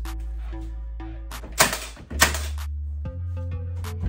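Battery-powered Milwaukee finish nailer driving two nails into wooden door trim: two sharp shots about half a second apart near the middle, over background music.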